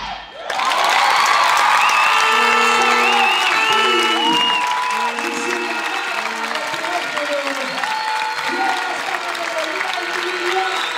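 Theatre audience applauding and cheering, breaking out about half a second in as the music cuts off, with shouts and high whistles carrying over the clapping.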